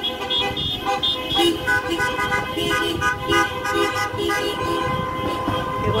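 Many car horns honking at once in protest from a slow convoy of cars. Short, repeated toots overlap with longer held blasts in several different pitches.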